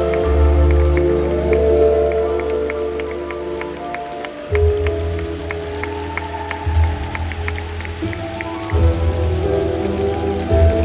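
Ballroom dance music with held chords over a heavy bass that drops out for moments and returns, with faint scattered ticks.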